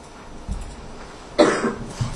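A person coughs once, sharply, about one and a half seconds in, with a soft low thump shortly before.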